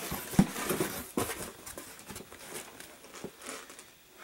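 Cardboard shipping box being handled and its lid flaps opened: scraping and rustling of cardboard with a few sharp knocks, the loudest less than half a second in.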